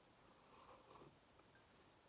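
Near silence, with faint soft sounds of a person sipping and swallowing from a mug between about half a second and a second in.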